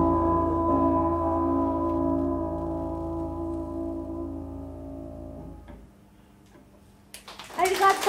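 The last chord of a live band of piano, double bass and drums rings out and slowly fades away, dying out about six seconds in. After a moment of near silence, applause and a voice break out near the end.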